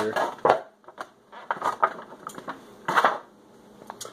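Clear plastic bag crinkling and rustling in the hands as a laser rangefinder is unwrapped from it, in irregular bursts with short pauses between.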